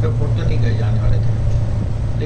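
Indistinct talking over a steady low hum.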